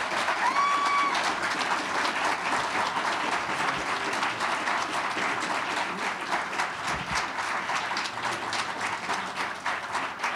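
Audience applauding steadily, with one brief whoop about half a second in.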